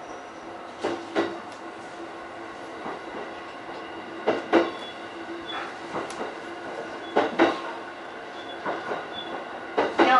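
E531-series electric train rolling slowly out of the station, heard from inside the cab car. Its wheels clack over rail joints in quick pairs about every three and a half seconds, over a steady low hum.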